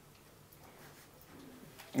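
A quiet pause in a small room: faint room tone, with a soft low hum-like sound in the second half. A man's voice starts speaking into a microphone right at the end.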